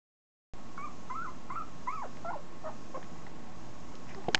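A 2.5-week-old Italian Greyhound puppy whimpering: a run of about seven short, high squeaks that bend up and down in pitch, trailing off about three seconds in.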